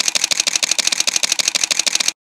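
DSLR camera shutter firing in a rapid continuous burst: an even run of sharp mechanical clicks, about a dozen a second.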